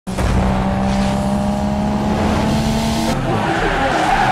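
Car sound effect: a steady engine note that gives way about three seconds in to a wavering tyre squeal.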